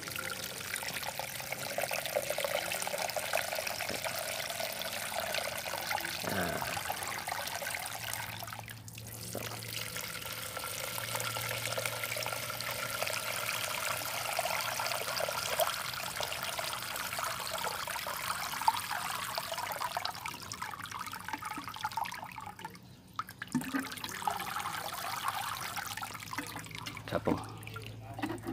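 Water showering from a plastic sprinkler rose onto wet soil and into two plant pots as they fill, a steady splashing patter. It breaks off briefly about nine seconds in and again for a moment past twenty seconds, then carries on.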